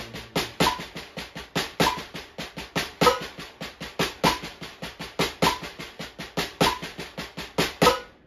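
Drumsticks playing a six-stroke roll as even sextuplets on a practice pad on the snare drum, about five strokes a second with accents, over a metronome clicking once every 1.2 seconds (50 BPM). The playing stops at the very end.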